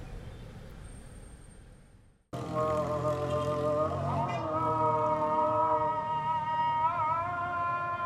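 Faint background sound fading away, then after a brief gap a music track starts a little over two seconds in: long held notes that slide slightly in pitch, over a low steady drone.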